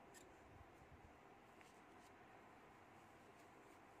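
Near silence: room tone with a few faint, light clicks from hands handling the stuffing and tweezers.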